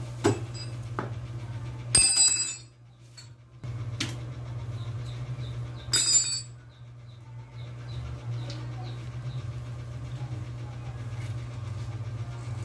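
Motorcycle front fork inner tube being worked up and down in its outer leg: two loud metal clanks with a bright ringing about two and six seconds in, and lighter knocks between, over a steady low hum.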